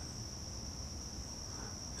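Crickets trilling steadily on one high, unbroken note.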